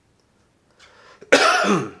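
A man clearing his throat once: a faint intake of breath, then a short, harsh rasp about a second and a half in.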